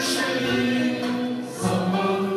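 A Turkish classical music choir singing a slow song in long held notes over a traditional instrumental ensemble, with a new phrase starting near the end.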